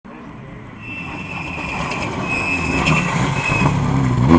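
Rally car engine approaching at speed along the stage, growing steadily louder until the car is close by near the end.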